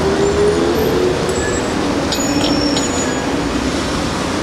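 Steady street traffic noise, with a faint engine hum that drops slightly in pitch in the first second.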